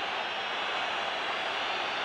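Steady crowd noise from a packed football stadium: an even hum of thousands of fans, at a constant level under the TV broadcast.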